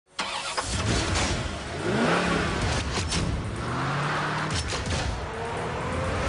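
Car engine starting suddenly, then revving, with rising whines as it climbs in pitch, mixed with music.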